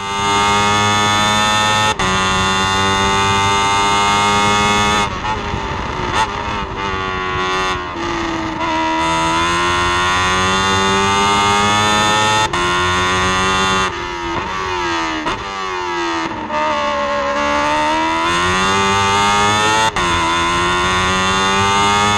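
Onboard sound of an open-wheel single-seater racing car's engine driven hard, its note climbing through the revs with quick gear-change cuts about two seconds in, midway and near the end. Twice the note falls away as the car slows and then builds again, with short blips around the sixth to eighth seconds.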